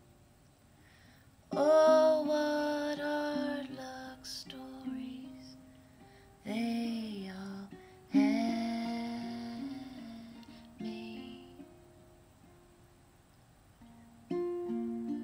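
Music: a woman singing over plucked acoustic string accompaniment, in a few phrases with quiet gaps between them.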